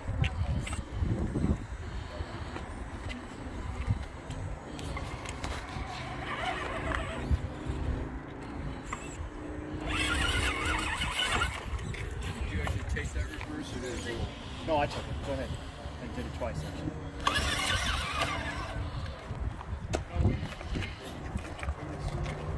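Electric RC rock crawler driving over rocks, its motor and gears whining in stops and starts.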